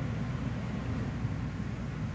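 Steady low background rumble with a faint even hiss.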